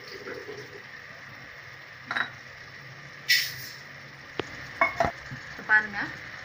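Mushroom masala sizzling in a metal pot while it is stirred, the spoon clinking and scraping against the pot, with the sharpest scrape a little over three seconds in.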